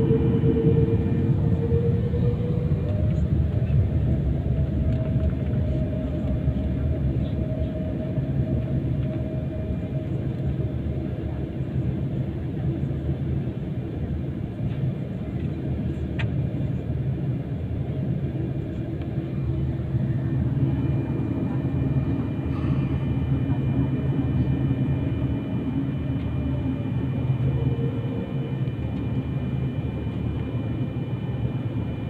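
Airliner cabin noise during taxi: the jet engines running at low taxi power as a steady low rumble, with a faint high whine above it. A whine slides in pitch in the first couple of seconds.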